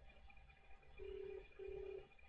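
Faint Australian telephone ringback tone, a low double ring of two short beeps of the same pitch close together, starting about a second in. It means the called line is ringing and has not yet been answered.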